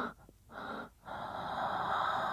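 A man breathing slowly and audibly in sleep, close to the microphone: a short breath about half a second in, then a longer one from about a second in.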